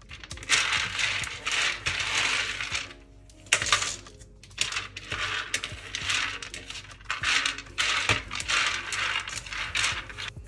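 Roasted peanuts rattling as hands sweep them across a tray and scoop them into a plastic jar: dry clattering in several bursts with short pauses between.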